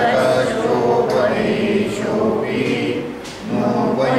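Several voices chanting together in unison, a group recitation, with a brief dip a little past three seconds in.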